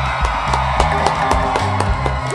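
Live band music from a concert recording, with the audience cheering over sustained low bass notes and a few short, sharp hits.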